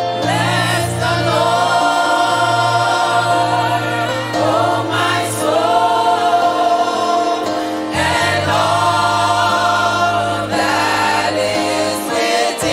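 Church worship team singing a gospel praise song together into microphones, with keyboard accompaniment holding steady low notes beneath the voices.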